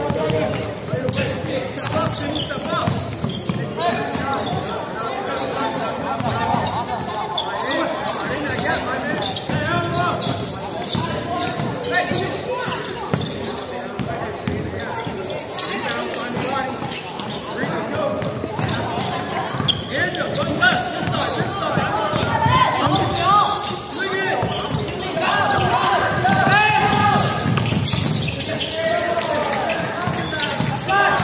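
A basketball game on an indoor court: the ball bouncing on the wooden floor amid overlapping voices of players and onlookers calling out, with no clear words.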